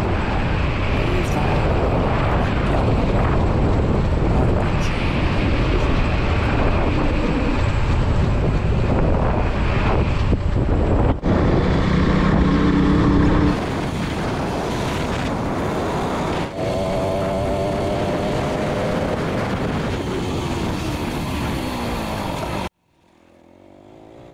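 Wind rushing over the mic of a KTM RC 200 motorcycle ridden at highway speed, with the bike's single-cylinder engine running beneath it. The wind noise eases a little past halfway, and the sound cuts off abruptly near the end.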